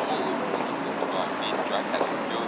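Street ambience at night: indistinct voices murmuring over traffic, with faint short high beeps now and then.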